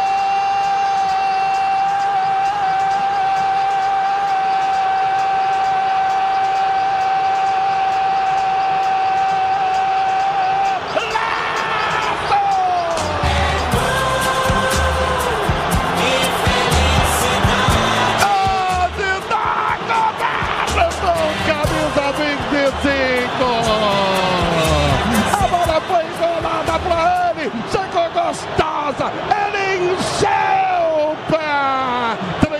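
A Brazilian football commentator's long drawn-out goal shout, one held note for about eleven seconds. It gives way to excited, fast commentary with falling pitch over music with a low thumping beat.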